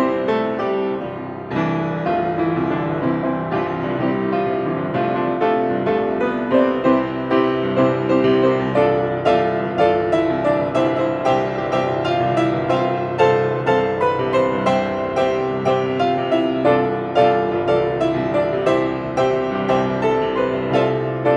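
Grand piano played solo, a rhythmic tune with dense chords and accented notes about twice a second.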